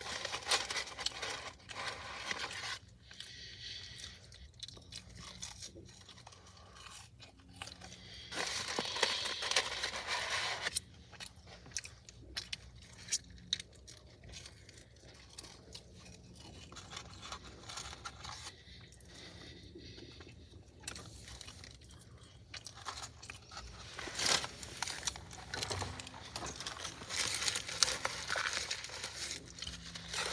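A person chewing French fries close to the microphone, with wet mouth sounds and small clicks. The chewing is louder at the start, about a third of the way in, and near the end.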